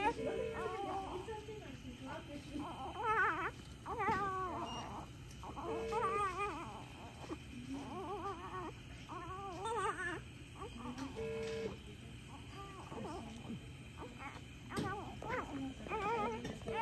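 Newborn baby crying in a series of short, wavering, high-pitched cries with brief pauses for breath between them.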